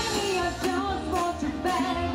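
Live amplified music: a woman singing a melody into a microphone over acoustic guitar, with low bass notes and a steady beat.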